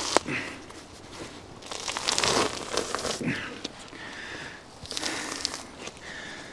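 Roe deer hide being pulled and cut away from the carcass during skinning: rustling, tearing sounds in several separate bursts, the longest about two seconds in.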